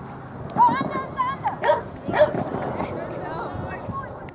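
A dog barking repeatedly in short, high-pitched barks and yips.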